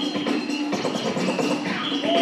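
Breakbeat music for breakdancing, with a steady beat.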